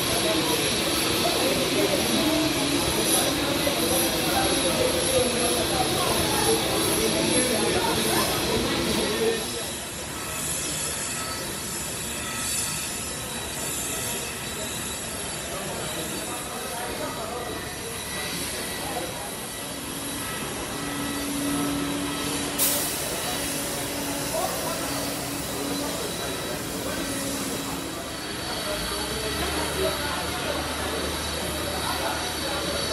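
Jet engines of a Boeing 787 Dreamliner running, a steady high-pitched whine over a rushing noise. The sound is loudest for the first nine seconds or so, then drops to a lower, steady level.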